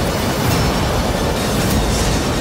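Loud dramatic TV-serial background score: a dense, rumbling low drone with no clear melody.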